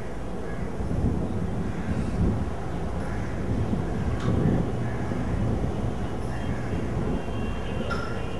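Outdoor roadside ambience: a low, uneven rumble with faint voices in the background.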